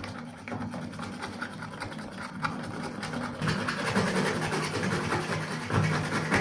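Hand-held hacksaw blade cutting through a UPVC water pipe, a continuous rasp of quick back-and-forth strokes that grows louder about halfway through.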